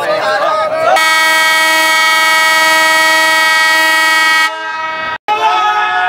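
Horn of a WDM3A diesel locomotive sounding one long, steady blast of about three and a half seconds. It starts about a second in and cuts off abruptly, with voices around it.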